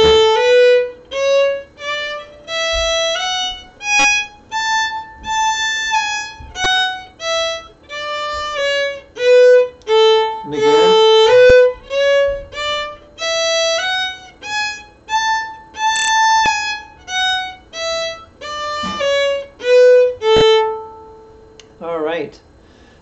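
Violin playing a one-octave A major scale up and down twice, stepping note by note, in shuffle bowing: two notes slurred in one bow stroke, then two separate strokes, with the slur alternating between down bow and up bow.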